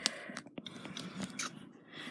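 Close handling noise as the doll is turned and its hair moved: rustling with several small clicks.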